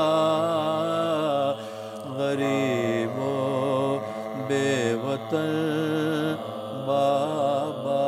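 Male voices chanting a soz-o-marsiya, a mournful Urdu elegy for Imam Husain and the martyrs of Karbala, in long, wavering held notes with a lower steady note beneath; the singing eases briefly about one and a half seconds in, then carries on.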